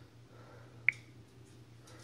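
A single sharp finger snap about a second in, over a faint, steady low hum.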